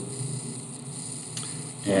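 Steady low hiss of room tone and recording noise in a pause, with one faint short click about one and a half seconds in.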